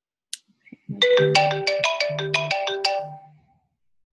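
Incoming-call ringtone on a Mac's FaceTime, signalling a phone call: a quick run of pitched notes starting about a second in and fading out after about two and a half seconds. A brief click comes just before it.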